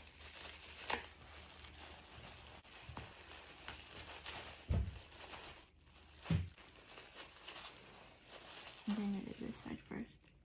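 Clear disposable plastic gloves crinkling and rustling as hands handle a twisted cotton shirt and band it with a rubber band, with a few sharp clicks and two low thumps in the middle.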